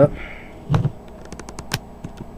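A soft knock, then a quick run of about five light clicks: handling noise from a camcorder as it is zoomed in and focused.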